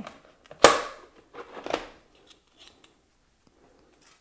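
Dry craft materials handled on a wooden tabletop: one sharp crackle about half a second in, then a couple of softer rustles.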